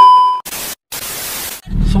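Edited transition sound effect: a loud steady beep tone that cuts off just under half a second in, then two bursts of static hiss with a short dropout between them. Near the end a low, steady car-cabin engine hum comes in.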